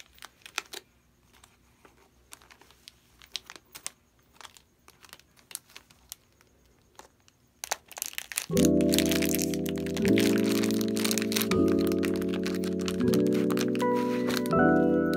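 Plastic packaging bag crinkling and clicking in the hands as a phone case package is handled. About eight and a half seconds in, loud background music with slow chord changes comes in and takes over, with the crinkling still heard on top.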